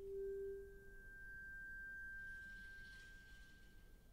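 Quiet sustained pure tones from a live piano, vibraphone, bass and drums quartet: a lower tone that swells and fades out about a second in, and a high tone held steady until near the end.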